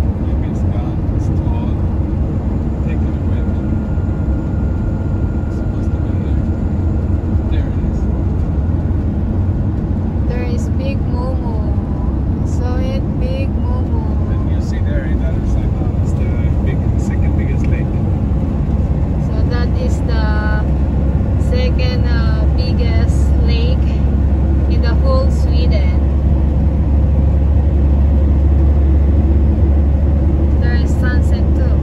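Steady low rumble of road and engine noise heard inside a vehicle's cabin while driving at motorway speed, growing a little louder near the end.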